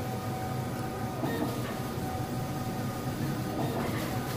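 Skyjet 512 large-format printer running a print job: a steady mechanical whir and rumble from the print carriage and media feed, with brief louder swells about a second in and near the end.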